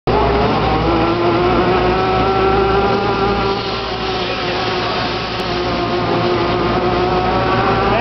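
AeroGo air-caster load mover running: a steady, loud hiss of compressed air escaping under the pallet, with a steady whine from the air-driven drive unit as it pushes the load.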